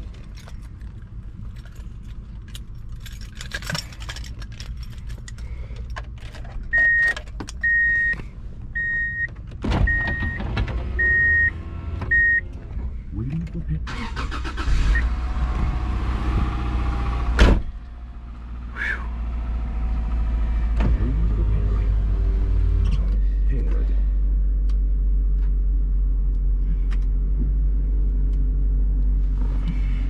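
Subaru interior: a few clicks and knocks, then a warning chime beeps six times, about once a second. The engine then cranks for about three seconds and catches. It settles into a steady low idle as it warms up.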